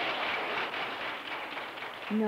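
A roomful of people applauding right after a group song ends, the last sung note trailing off as the clapping starts. The clapping eases slightly toward the end.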